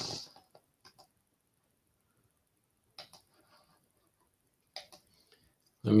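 Near silence broken by a few faint, scattered clicks, the clearest about three seconds in and just before five seconds in.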